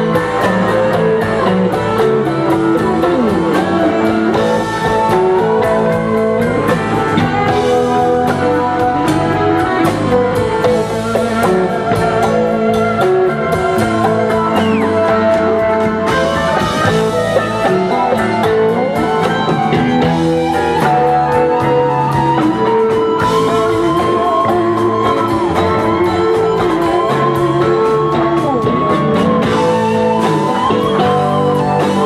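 Live rock band playing an instrumental passage, with an electric guitar carrying a bending lead line over rhythm guitar and drums.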